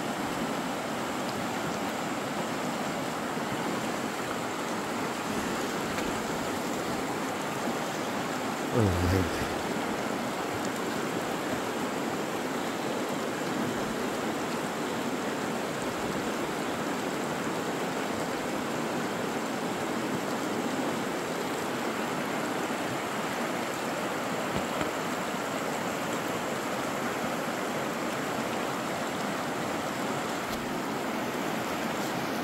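Fast, shallow river rushing over rocks: a steady wash of water noise throughout. About nine seconds in, a brief low thud stands out as the loudest moment.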